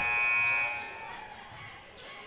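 Basketball scoreboard horn in a gym sounding once: a steady buzz that starts abruptly, holds for about a second, then dies away.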